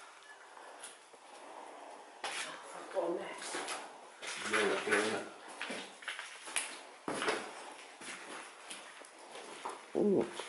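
Quiet, indistinct voices talking in short bursts, with a few sharp knocks and scuffs, the clearest about seven seconds in.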